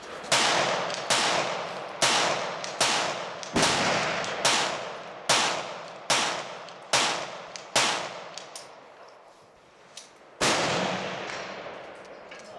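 A suppressed Ruger Mark II Target .22 pistol firing a string of about ten shots at roughly one a second. After a pause of over two seconds comes one more shot. Each shot is a sharp crack followed by an echo trailing off.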